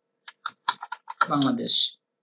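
Keystrokes on a computer keyboard: a quick run of clicks typing out a word in the first second. A man's voice speaks briefly in the second half.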